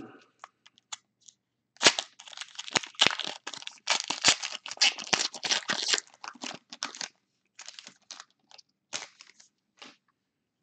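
Wrapper of a Panini Court Kings basketball card pack crinkling and tearing as it is pulled open by hand, a dense crackle for several seconds that thins to scattered crinkles near the end.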